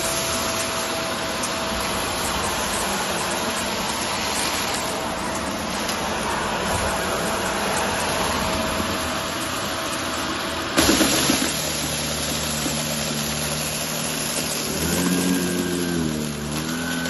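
Shark upright vacuum cleaner running over carpet, sucking up small gravel pebbles with a steady drone. About eleven seconds in there is a sudden loud burst, after which the motor's tone changes.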